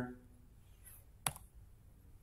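A single sharp click about a second and a quarter in, from the computer being used to advance the presentation slide, over quiet room tone.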